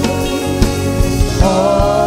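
Live gospel praise music: a band with a steady drum beat and held instrument chords, and a group of voices singing. The singing comes in strongly about one and a half seconds in.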